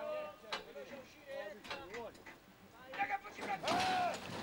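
Starting stalls at a horse race springing open near the end, a loud clatter mixed with voices. Before that, faint voices and a few sharp knocks.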